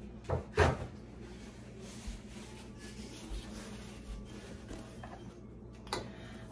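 Two quick knocks about a third of a second apart, like a door or cabinet shutting, followed by faint room tone with a low steady hum.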